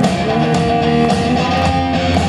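A live amplified rock band playing, with electric guitars to the fore over a full band.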